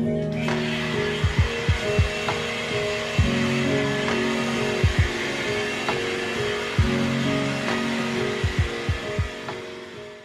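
Hand-held hair dryer running with a steady rushing blow, starting about half a second in and fading near the end, under soft background music. Several short low thumps are scattered through it.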